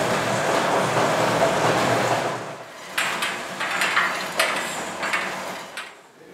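A steady rushing noise for about two seconds, then a run of irregular knocks and scrapes as a long wooden pole rakes the embers in a wood-fired brick bread oven.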